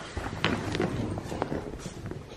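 Crinkling and scattered sharp taps from a clear plastic zippered bag being handled, with footsteps on a hard tiled floor.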